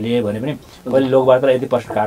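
Speech: a man talking, with a brief pause about half a second in.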